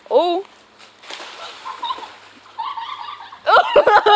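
Splashing on a wet plastic water slide as someone slides along it, between a child's short shout at the start and loud shouting near the end.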